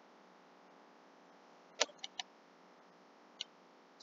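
Near silence broken by a few short, sharp clicks from a computer being used: three close together a little under two seconds in and one more about three and a half seconds in.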